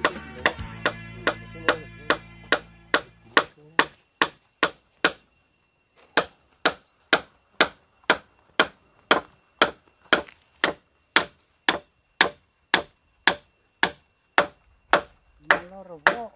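Steady, evenly spaced blows of a tool striking wood or bamboo, about three a second, with a short pause about five seconds in. Background music fades out under the blows in the first few seconds.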